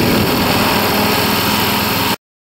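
Light single-engine propeller aircraft flying overhead: a steady, loud drone of its piston engine and propeller.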